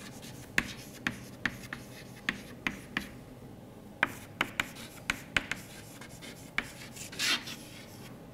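Chalk writing on a chalkboard: a run of sharp taps and short scrapes as the letters are written, with a longer scrape about seven seconds in.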